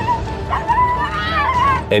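A dog whining in a high, wavering cry as a large snake squeezes it in its coils, a sign of distress.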